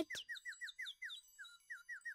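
A faint, rapid run of short high chirps, each falling in pitch, about six a second.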